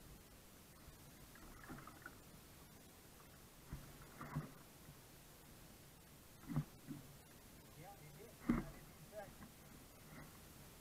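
Kayak being paddled: four short knocks with a splash, about two seconds apart, as the paddle strokes.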